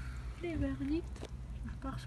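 A short spoken word, drawn out with a bending pitch, over a steady low rumble, with one sharp click a little after a second in.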